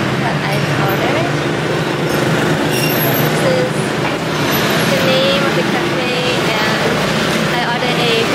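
Steady din of city street traffic, motor vehicles running, with people talking in the background.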